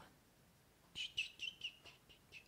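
A small bird chirping faintly: a quick run of about six short high chirps starting about a second in.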